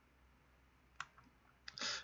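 A single sharp computer mouse click about a second in, over a quiet room, with a faint tick or two after it. A short breath-like hiss comes near the end.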